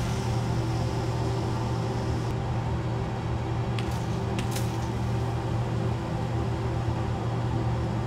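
Steady low mechanical hum, like a fan or extractor running, with a few faint ticks around the middle; it cuts off sharply at the end.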